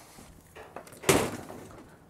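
A single sharp knock about a second in, with a short ringing tail, against faint background.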